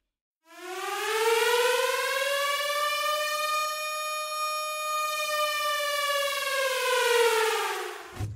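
Air-raid-style siren sound effect: after a brief silence it winds up in pitch over about a second, holds a steady high tone, then winds down again near the end.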